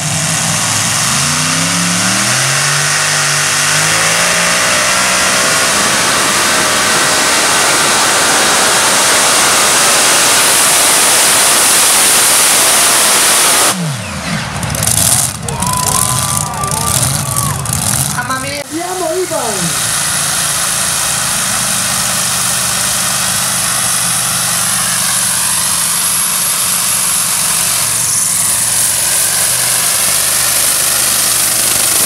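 Pulling tractor's engine at full throttle under load, its pitch climbing over the first few seconds and then holding a loud steady roar. About halfway it changes abruptly to a falling glide and some brief higher tones, then an engine running steadily again.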